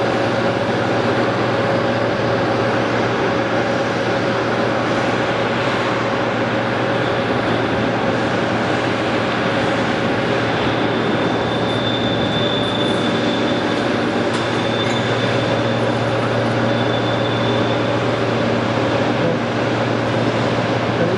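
Hydraulic press brake's pump and motor running steadily at idle, a constant machine hum. A faint high whine joins it about halfway through.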